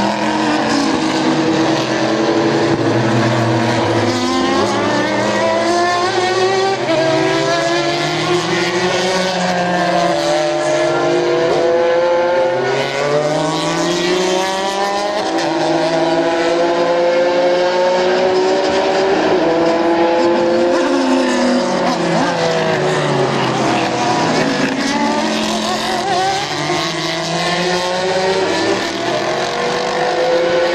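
American Le Mans Series race cars' engines heard from trackside, rising and falling in pitch through the gears as they accelerate and brake past, several cars overlapping at once.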